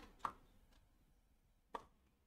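Two faint, short knocks about a second and a half apart, against near silence.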